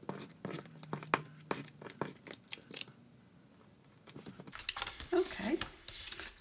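A handheld adhesive tape runner drawn across cardstock, giving a quick run of crackling clicks for about three seconds. Paper and cardstock rustle and shuffle as the pieces are handled near the end.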